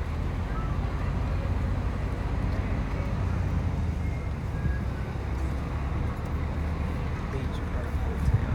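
Steady low rumble of a moving open-top tour bus, its engine and road noise heard out in the open air, with indistinct voices faintly in the background.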